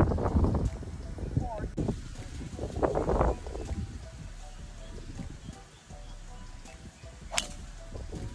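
A driver striking a golf ball off the tee: one sharp crack about seven seconds in.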